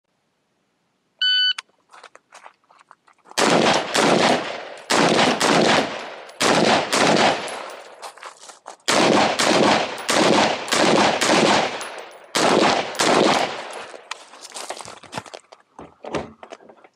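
Shot-timer start beep about a second in, then a rifle fired in quick strings of shots: about six clusters of rapid shots roughly a second and a half apart, with a few lighter shots near the end.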